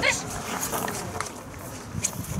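A dog barking during a protection-work attack on a helper, with a man's voice; a short loud cry comes right at the start.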